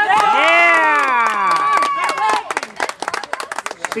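Spectators cheering a player's introduction: several voices in long shouts falling in pitch for about two and a half seconds, then clapping.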